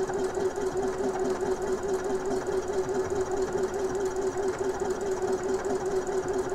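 Elna eXperience 450 computerized sewing machine stitching a decorative pattern stitch at steady speed: an even motor hum with a slight waver, running fairly quietly and smoothly, without vibration.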